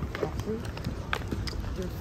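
Footsteps on pavement: a handful of separate sharp steps, with faint voices.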